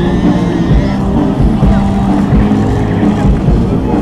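Low steady drone of a Lockheed C-130H Hercules's turboprop engines on its landing approach, mixed with music over loudspeakers and crowd noise.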